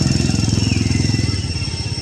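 A small engine running with a rapid low pulsing that eases slightly toward the end, over a steady high-pitched whine.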